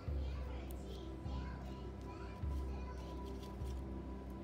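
Background music with a deep bass beat about every 1.2 seconds, starting right at the beginning, with faint voices in the mix.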